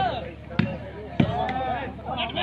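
A volleyball being struck during a rally: two sharp thuds about half a second apart, with players' shouts over them.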